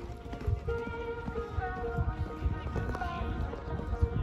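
Show-jumping horse cantering on a sand arena, its hoofbeats coming as irregular dull knocks, with music playing in the background.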